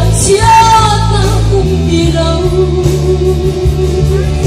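A woman singing a song into a microphone over band accompaniment with a steady bass line, holding a long note about half a second in.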